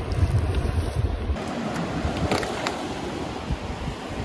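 Wind buffeting the microphone: a heavy low rumble for about the first second, then lighter, with a couple of faint clicks a little past the middle.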